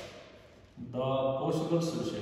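A man's voice chanting in long, steady held notes, fading early on and starting again about a second in.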